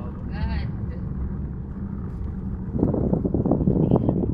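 Road noise inside a moving car: a steady low rumble that turns louder and rougher about three seconds in. A short voice exclamation comes near the start.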